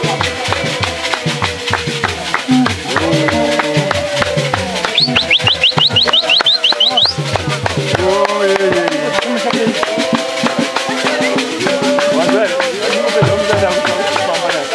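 A congregation of men singing a church song together while dancing, with shaken rattles keeping a steady beat. About five seconds in, a brief, shrill trilling call rises over the singing for about two seconds.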